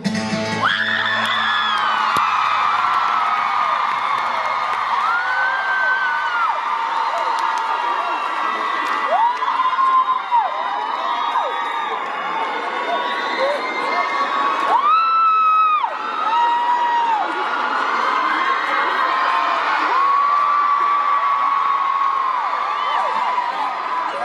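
Concert crowd screaming and cheering without a break, many overlapping high-pitched held screams, with one especially loud shrill scream about two-thirds of the way through. A low note from the band dies away in the first few seconds.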